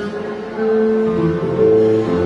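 Live instrumental music amplified through a hall PA: a melody of long held notes over accompaniment, getting louder about half a second in.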